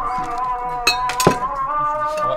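Glasses and tableware clinking on a dinner table, two sharp clinks about a second in, over steady held background music.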